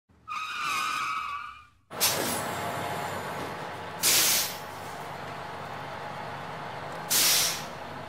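Bus sound effects: a short pitched squeal, then a sudden start of a running vehicle with two loud hissing bursts of air brakes about three seconds apart.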